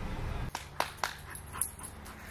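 Steady traffic noise that cuts off abruptly about half a second in. Then come a few sharp clicks, the two loudest about a quarter-second apart.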